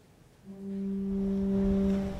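Church organ sounding a single steady held note, starting about half a second in and lasting about a second and a half: the starting pitch given for the sung response.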